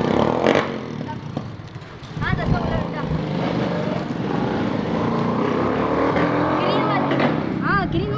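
A motor vehicle engine runs close by from about two seconds in, a steady hum whose pitch creeps up slightly. Short bursts of voices come over it about two seconds in and near the end.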